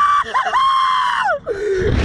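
A young man screaming on a Slingshot reverse-bungee ride: two long, high-pitched screams with a brief break between them, then a lower-pitched cry near the end.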